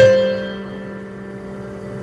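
Slow instrumental keyboard music: a piano-like chord struck at the start and left to ring, fading away until the next chord.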